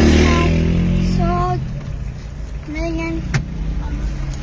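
A motor vehicle passing close by, its engine loudest at the start and fading away over the first second and a half, with a sharp click about three seconds in.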